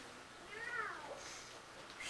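A faint, short high-pitched cry about half a second in, rising and then falling in pitch over roughly half a second.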